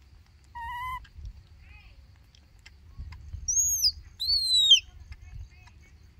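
Short high-pitched calls from baby macaques: a brief wavering coo about half a second in, then two louder, shrill calls around the middle that arch up and fall in pitch, the second the loudest.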